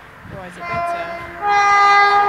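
Train horn sounding as a train approaches a level crossing: a quieter steady note, then a louder, held note about a second and a half in.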